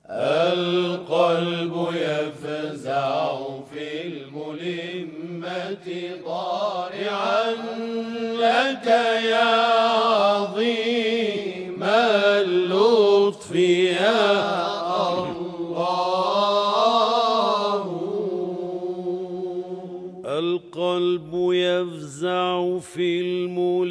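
A religious chant in the Islamic nasheed style: a voice sings a long, ornamented melody in slow phrases over a steady held drone.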